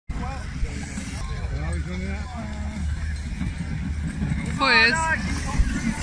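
Spectators talking and calling out over a steady low rumble, with one loud, high-pitched shout about four and a half seconds in.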